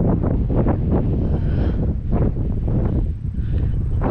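Strong wind buffeting the microphone: a heavy, fluttering low rumble that hardly lets up.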